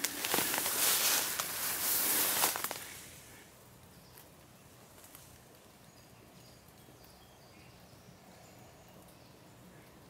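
Footsteps pushing through tall grass and brush, rustling and swishing for about three seconds, then stopping. After that, quiet outdoor ambience with faint distant bird calls.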